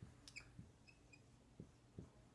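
Faint dry-erase marker strokes on a whiteboard: a few light taps and two short, thin squeaks about a second in.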